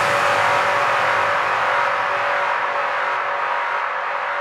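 Breakdown in a progressive psytrance track: the kick drum and bass are out, leaving a dense wash of synth noise with a few sustained tones that slowly fades and darkens as its top end drops away.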